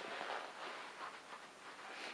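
Faint rustling of a Dririder Adventure motorcycle riding glove being pulled onto a hand.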